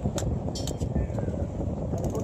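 Wind buffeting the microphone, with a few sharp clicks about a fifth of a second in and again around two-thirds of a second in.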